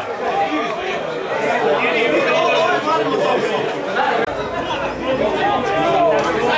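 Several people talking over one another, indistinct chatter that goes on without a break.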